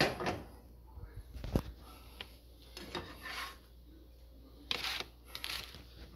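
Kitchen handling noises of a frying pan at a counter: a sharp knock at the start and another about a second and a half in, then brief rubbing and scraping sounds.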